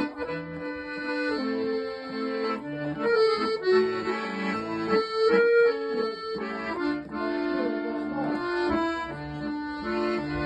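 Chromatic button accordion playing an instrumental tune: a sustained melody and chords over short, repeated bass notes.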